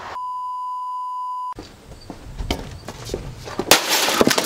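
A steady high beep lasting just over a second. Then a loud crack near the end as a sledgehammer smashes a plastic desktop printer, with small plastic pieces clattering.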